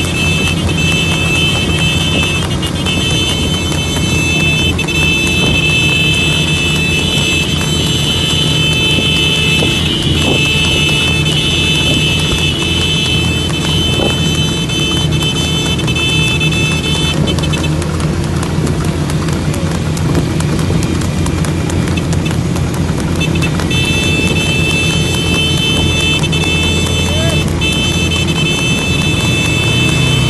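Motorcycle engine running and road noise while riding alongside a trotting tanga horse, its hooves clip-clopping on the asphalt. A steady high-pitched tone runs over it, dropping out for several seconds in the middle.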